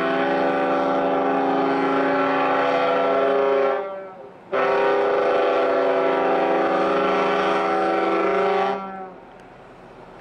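Ship's horn of a Hurtigruten coastal ship sounding two long blasts, each about four seconds, with a short break between them; a deep chord of several notes. It is a greeting as two Hurtigruten ships pass. Wind and sea noise remain after the second blast ends.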